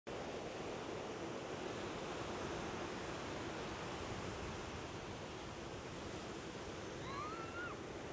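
Ocean surf breaking on a sandy beach: a steady rushing wash of waves. Near the end a few short, high, arching calls sound over it.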